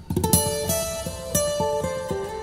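Background music on plucked acoustic guitar: a melody of picked notes that comes in suddenly and loud just after the start.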